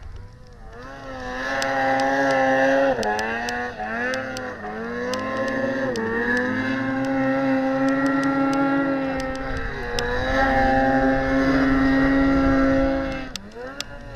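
Snowmobile engine held at high revs on a deep-powder hill climb. Its pitch dips briefly a few times as the throttle eases, then falls away near the end.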